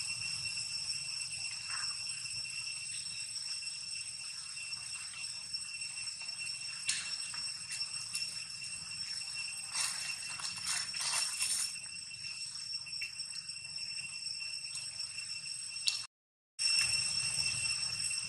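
A steady, unbroken high-pitched ringing drone made of several pure tones stacked one above another. Brief scratchy, rustling sounds come through it about ten to twelve seconds in. The sound drops out completely for about half a second near the end.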